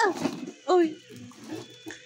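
A woman's high exclamation "ah" sliding down in pitch, followed under a second later by a second short vocal sound that also falls in pitch.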